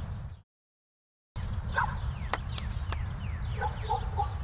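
The music fades out into about a second of dead silence, then outdoor ambience comes in: a steady low hum with birds chirping in short falling calls, and two or three sharp clicks in the middle.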